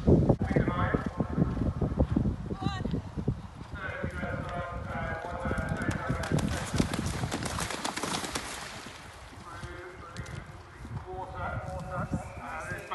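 Hoofbeats of horses galloping over turf on a cross-country course. From about six to nine seconds in, a horse splashes through a water jump, with indistinct voices in the background.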